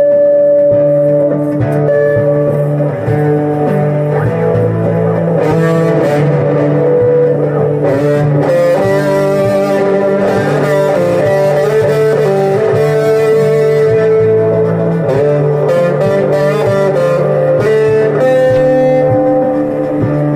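Guitars playing an instrumental passage with long held notes and no singing.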